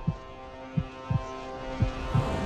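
Heartbeat sound effect: low thumps coming in pairs about once a second, over a steady humming drone.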